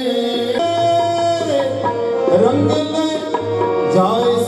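Devotional hymn singing (Sikh kirtan) with tabla and sustained held notes in the accompaniment; the voice glides through a phrase in the middle.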